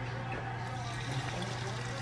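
Raw egg whites poured from a bowl into a stainless steel pan, a soft steady trickle, over a steady low hum.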